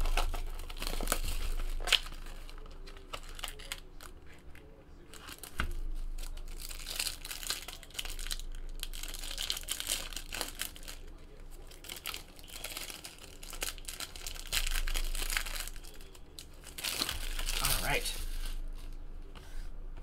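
Plastic pack wrapping crinkling and tearing as a trading-card pack is ripped open by hand, in irregular crackles with a louder burst near the end.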